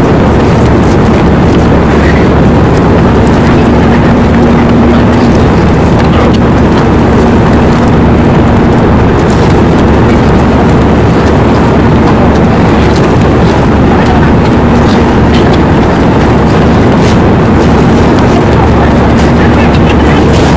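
Loud, steady cabin noise of an airliner in flight: engines and rushing air running without a break, with a faint steady hum underneath.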